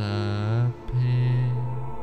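Meditation background music of low, long-held chant-like tones, with a brief break about three-quarters of a second in before the next note.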